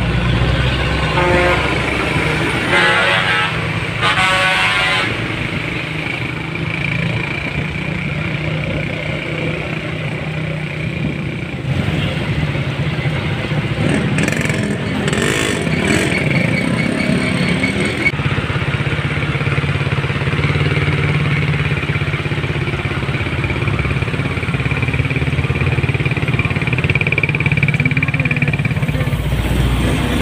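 Traffic in a jam: steady low engine rumble from idling trucks, cars and motorcycles, with two horn blasts in the first five seconds. An engine revs briefly about halfway through.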